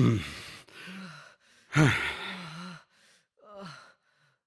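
A man's wordless vocal outbursts: two loud, breathy cries about two seconds apart, each falling in pitch. Quieter low moans and breaths come between them, and a short one follows near the end.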